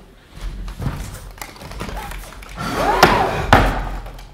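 A violin case being shut and stowed in a wardrobe: a few wooden knocks and thuds, then a louder scrape with two sharp knocks about three seconds in.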